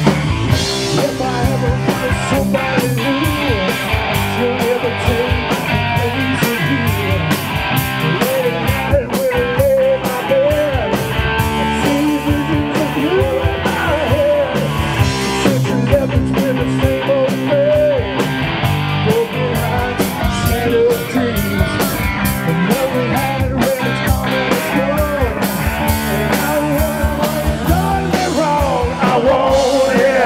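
Live rock band playing: electric guitar over bass guitar and a drum kit, loud and steady throughout.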